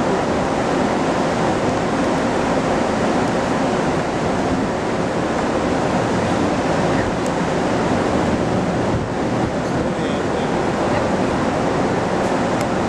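Steady rushing wind noise on the microphone on a cruise ship's open deck, holding at an even level with no distinct tones or breaks.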